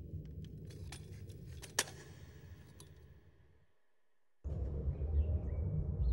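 Faint metallic clinks and rattles of a walker being used, a few sharp ticks over a low hum, the loudest a little under two seconds in, fading away after about three seconds. After a brief silence, an outdoor background with a few faint chirps comes in.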